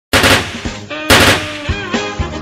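Gunfire sound effect: two loud bursts of automatic fire about a second apart.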